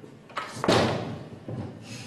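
A wooden door slams shut, a loud, sudden bang that dies away over about half a second, followed by a lighter knock about a second later.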